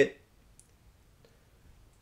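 A man's word ends right at the start, then a pause of near silence with a single faint, short click about half a second in.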